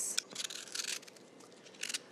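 Vegetable peeler scraping the skin off a pear in a few short strokes.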